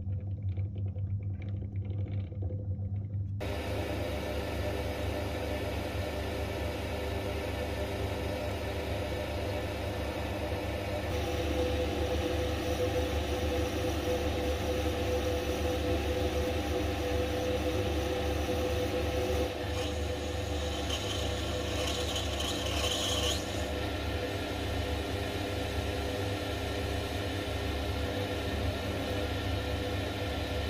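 A few light metal clicks as the lathe chuck is tightened on a brass tube. The small metal lathe then starts running and turns the brass, its cutting tool shaving the metal in a steady grinding whir. The cut grows a little harsher with a higher scraping note about twenty seconds in.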